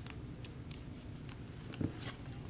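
Oracle cards being handled: a few faint, scattered clicks of card edges, and a soft thump near the end.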